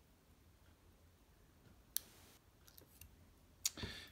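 Faint, sparse clicks of steel tweezers and small brass lock parts as the last key pin and spring are worked out of a Schlage Everest Primus cylinder housing. There is one sharp click about two seconds in with a short scratchy noise after it, a few small ticks, and two louder clicks near the end.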